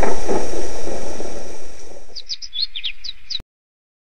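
A loud rushing noise fades out over the first two seconds. A few quick, high bird chirps follow, each dropping in pitch, and then everything cuts off suddenly about three and a half seconds in.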